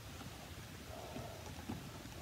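Quiet room tone with faint handling noise as a hardcover picture book is turned around and held up open.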